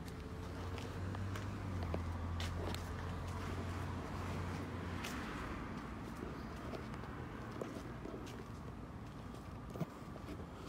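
Footsteps on a concrete path with scattered small clicks, over a low hum that is strongest for the first few seconds and then fades back.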